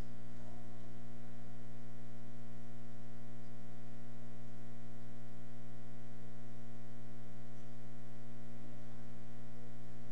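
Steady electrical hum with a stack of even overtones, unchanging throughout.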